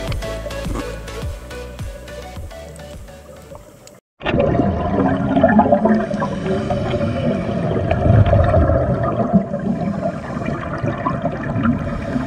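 Background music fades out and cuts off about four seconds in. It is followed by the muffled, gurgling rush of scuba regulator exhaust bubbles from divers breathing underwater, picked up by an action camera in its housing.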